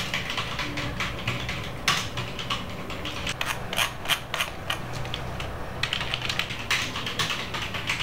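Computer keyboard being typed on: a quick, irregular run of key clicks that keeps going, with short pauses between bursts.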